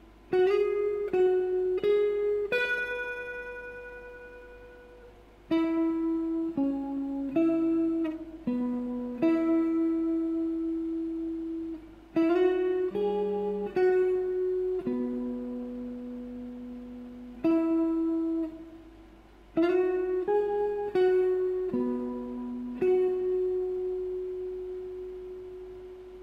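Strat-style electric guitar with Fender American Standard pickups, played clean through an acoustic amp, picking a single-note melody. Short runs of notes, some slid up into, each settle on a long held note that rings out and fades, and the phrase comes round about four times.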